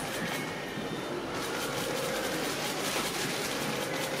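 Steady background noise of a busy room, with no distinct sound standing out.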